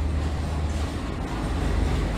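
WDM3A diesel-electric locomotive with its ALCO 251 sixteen-cylinder engine running as it pulls alongside the platform at close range on arrival: a steady, deep engine rumble with running noise from the train.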